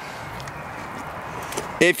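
Steady outdoor background hiss with the truck's engine shut off and no distinct event. A man's voice begins near the end.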